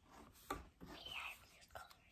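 Quiet room with a faint whispered voice and a soft tap about half a second in.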